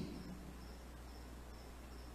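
Faint chirping insect: short high-pitched chirps every half second or so over a low steady hum.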